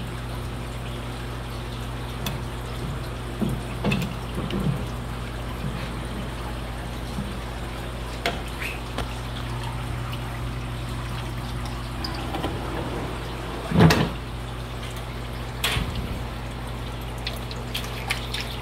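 Water sloshing and dripping as a mesh fish net is swept through an aquarium tank, with scattered splashes, the loudest about 14 seconds in. A steady low hum from the tank equipment runs underneath.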